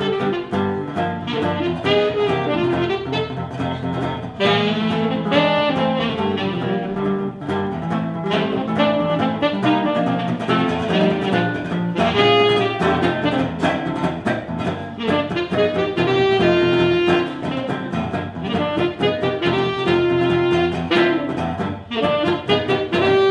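Tenor saxophone playing a jazz melody over strummed acoustic-electric guitar chords, performed live.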